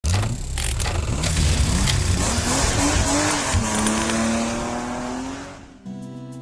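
Race-car sound effects: engine noise and tyre squeal with several sharp hits in the first two seconds, then a pitched engine note that rises, settles into a steady tone and fades out near the end.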